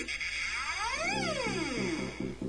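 Techno music: the beat drops out and a synthesizer sweep glides up in pitch and back down. A new fast-pulsing synth line comes in just over half a second in.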